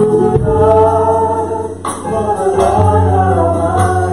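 Gospel worship singing: a male lead voice and several women's voices singing together over a low, sustained instrumental accompaniment, with a single sharp percussive hit about halfway through.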